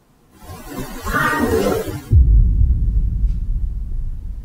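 A hiss of noise swells up over the first two seconds, then a sudden deep rumble comes in and carries on: a dramatic horror-style whoosh-and-boom sound effect.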